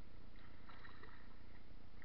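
River water splashing and lapping against a camera held at the waterline, over a steady low rumble. A brief burst of splashing comes about half a second in.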